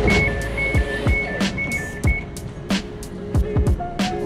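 Background music with a steady beat. Over it, a train's door-closing warning beeps as a two-tone electronic signal alternating high and low, stopping about two seconds in.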